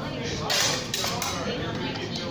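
Steel longsword blades striking each other in sparring: a loud clash about half a second in, then two quick metallic clinks, with voices talking underneath.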